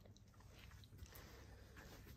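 Near silence: faint room tone with a tiny click about a second in.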